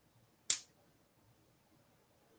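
A single short, sharp click about half a second in, with near silence around it.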